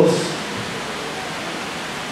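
The end of a man's spoken word fading out at the start, then a steady, even hiss of background noise with no other sound in it.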